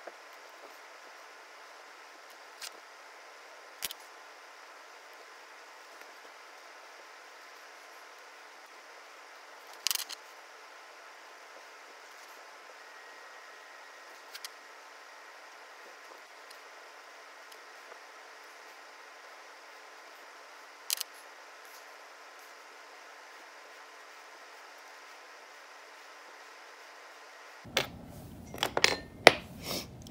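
Faint steady hiss with a few sharp, isolated clicks of a metal cuticle pusher against fingernails. Near the end come several louder knocks, as the tools are set down on a wooden tabletop.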